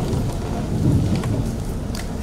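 An audience in a hall settling back into their seats after standing: a low, steady rumbling shuffle with a few faint clicks.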